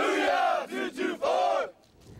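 A group of men chanting a marching cadence in unison while marching: four shouted syllables, long, short, short, long.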